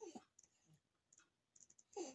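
Faint clicking and sucking sounds of a baby feeding from a bottle, with two brief louder sounds falling in pitch, about two seconds apart.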